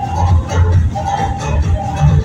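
Loud DJ dance music played over a PA system, with a heavy, pulsing bass beat and held notes of a melody line above it.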